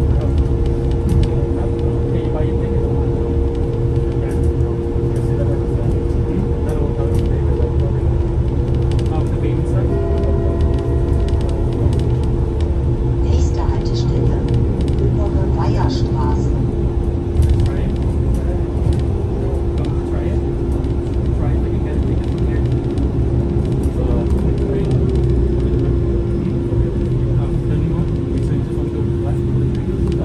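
Inside a Solaris Trollino 18 articulated trolleybus on the move: a steady low rumble with a constant electrical hum, and a second, higher hum that stops about seven or eight seconds in.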